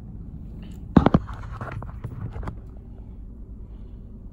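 Handling noise: two sharp knocks about a second in, then a run of clicks and rustling until about two and a half seconds, as the phone camera and the styrofoam takeout box are moved. A steady low rumble from inside the car runs underneath.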